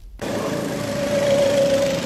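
Steady small-engine drone with a constant mid-pitched hum, cutting in abruptly just after a brief silence.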